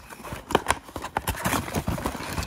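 Cardboard trading-card box being opened by hand: a flap pulled back and the box handled, giving a run of irregular clicks, taps and cardboard rustles.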